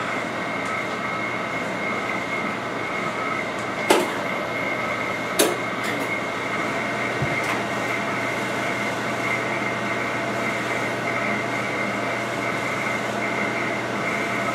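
Steady hum of machinery running, with a constant high-pitched whine over a low drone. Two short clicks come about four seconds in and again a second and a half later.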